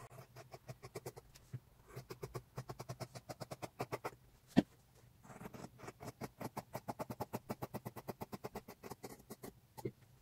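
Tailor's shears cutting through thin linen fabric: two long runs of quick, even snips, about six a second, with a single sharper click about halfway through.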